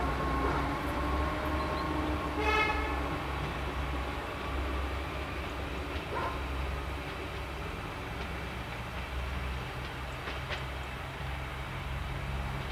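Stadler GTW diesel multiple unit moving away, its engine running as a steady low hum, with one short horn toot about two and a half seconds in.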